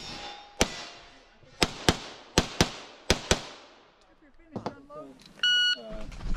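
Grand Power X-Caliber pistol fired in quick pairs, about eight shots in the first three and a half seconds, each with a short echo. Near the end, one short, steady electronic beep.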